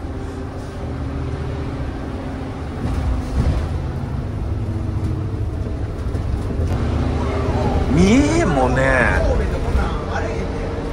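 Small route bus heard from inside its cabin while driving: the engine and the tyres on the wet road make a steady low rumble. A man speaks briefly near the end.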